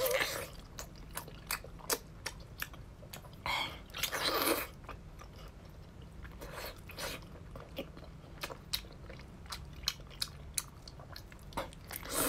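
Close-miked biting and chewing of a large piece of soy-braised pork: scattered wet mouth clicks and smacks, with longer wet bursts about three and a half to four and a half seconds in and again near seven seconds.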